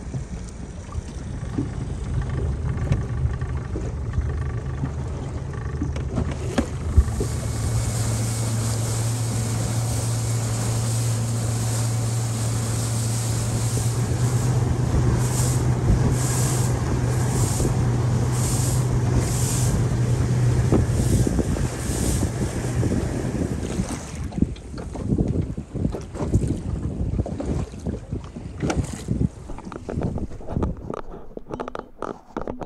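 Outboard motor of a rigid inflatable boat running under way, its steady engine note mixed with wind and water rushing past the hull. About three-quarters through the engine sound drops away, leaving irregular knocks and splashes.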